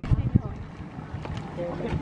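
Low rumbling thumps on the microphone in the first half-second, then a quiet outdoor background with faint distant voices.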